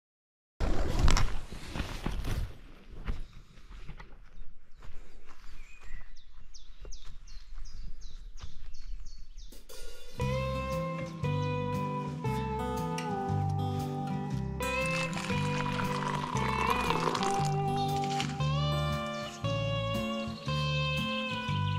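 Irregular outdoor noise with scattered knocks, followed about halfway through by background music with a bass line and plucked-guitar melody.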